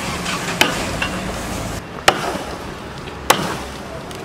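A machete chopping into a tree branch: three sharp strikes, roughly a second and a half apart, over steady background noise.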